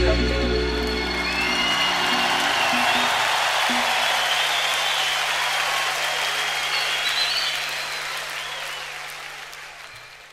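A concert audience applauding, cheering and whistling as a live band's last chord rings out and dies away. The applause fades out gradually toward the end.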